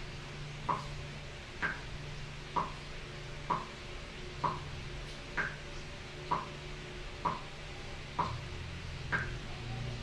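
Steady ticking, just under one tick a second, with every fourth tick higher in pitch, over a low steady hum.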